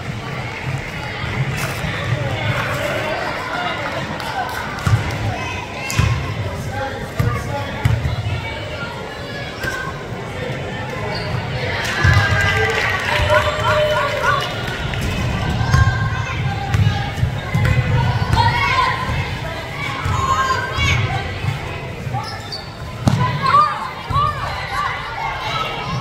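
Basketball bouncing on a hardwood gym floor, a number of separate thumps through the stretch, over the voices of players and spectators.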